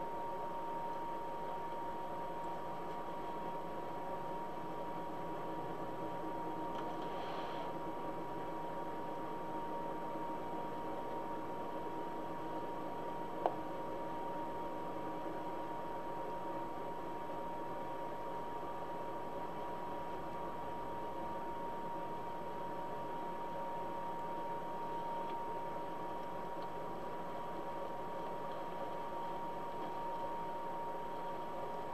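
Steady background hiss with a constant high-pitched tone running under it, a faint brief rustle about seven seconds in and a single sharp click near the middle.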